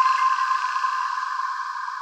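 Tail of an electronic logo jingle: a held high synthesized tone with a haze of echo, slowly fading out.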